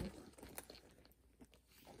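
Faint handling of a Loungefly Hello Kitty crossbody bag in the hands: a few light clicks and rustles about the first half second, then near silence.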